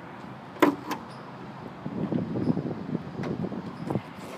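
A short sharp click about half a second in, then rough fluttering wind and handling noise on a phone microphone as it is swung about.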